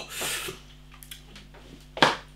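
A man's breathy exhale, a short hiss of breath lasting about half a second, as a reaction just after tasting a strong beer; then near quiet with a few faint clicks.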